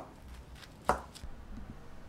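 Chef's knife cutting through yellow bell pepper onto a wooden cutting board, with one sharp chop about a second in.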